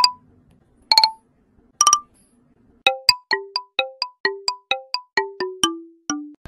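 A ringtone-like electronic melody of short, quickly fading notes: three notes about a second apart, then a quick run of about four notes a second that steps lower in pitch near the end.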